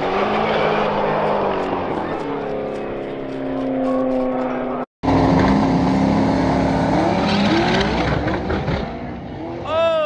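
Drag-racing cars accelerating hard down the strip, engine pitch climbing and stepping with gear changes as they pull away. After a sudden cut, two more cars launch with engines revving up. Near the end there is a brief, loud falling screech as one car spins out and loses a wheel.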